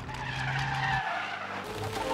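Film sound effect of a truck's tyres screeching in a skid, a squeal falling in pitch over about a second and a half.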